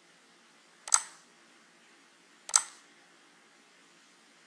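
Two computer mouse clicks, about a second and a half apart, each a quick press-and-release.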